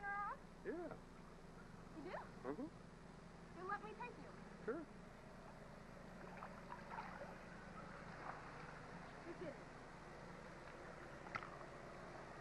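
Faint, distant voices calling in short bursts, mostly in the first half, over a steady low hum and light water movement in a swimming pool.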